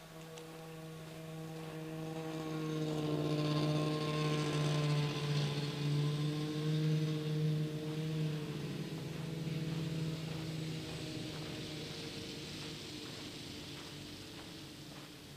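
A steady droning motor with a hiss above it, growing louder over the first few seconds and fading away again after the middle.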